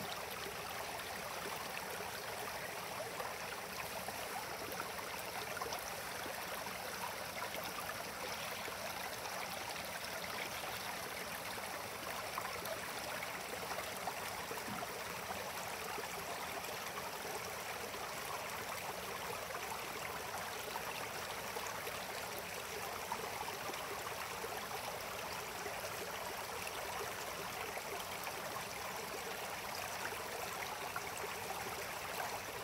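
Shallow stream running over rocks and boulders: a steady, even water noise.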